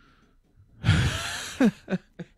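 A man laughing into a close microphone: about a second in, a loud rush of breath, then two short voiced bursts falling in pitch.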